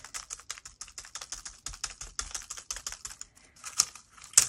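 A makeup sponge dabbing acrylic paint through a plastic stencil onto crumpled kraft packing paper: a quick run of light tapping, several taps a second. The tapping stops near the end, with a couple of louder taps.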